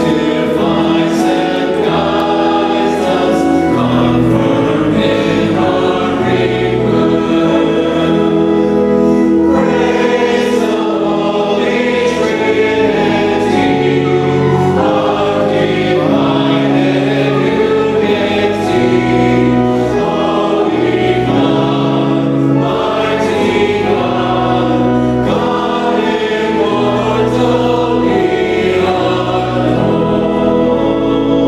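Church choir and congregation singing a hymn with pipe-organ-like sustained chords beneath, steady and full throughout. This is the Mass's entrance hymn.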